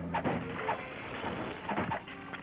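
Cartoon sound effects of a pile of junk being rummaged through: a rattling clatter with several sharp knocks and clanks.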